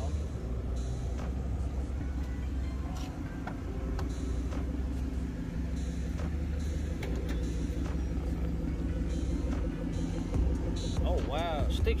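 Steady low rumble of an idling car engine, with faint voices in the background.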